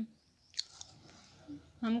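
Low background noise with one short, sharp click about half a second in, followed by a smaller tick. A woman's voice says a brief 'hm' near the end.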